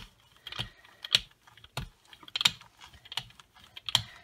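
Hand brayer rolled back and forth under firm pressure over paper on a gel press printing plate, giving a string of sharp clicks roughly every half second.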